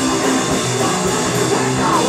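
Live rock band playing loud and without a break: electric guitars over a drum kit, heard from the audience.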